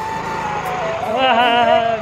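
A Yamaha scooter pulling away, under a man's voice calling out "go, go" a little past a second in, with sustained music notes running over it.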